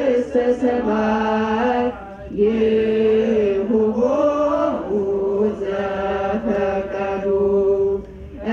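Voices chanting an Ethiopian Orthodox hymn (mezmur), holding long notes that slide between pitches, with a short break about two seconds in.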